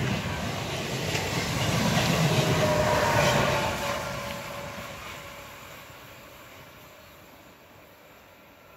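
Renfe Rodalies electric commuter train running along the track, loud at first and then fading steadily as it moves away into the distance.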